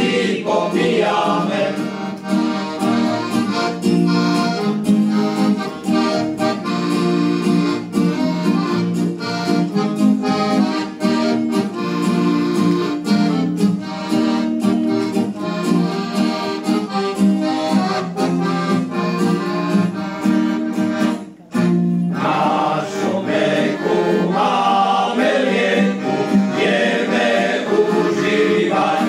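Button accordion playing an instrumental interlude with acoustic guitar accompaniment in a steady folk-style rhythm. The music breaks off briefly about 21 seconds in, and the male choir comes back in singing over the accordion and guitar for the last few seconds.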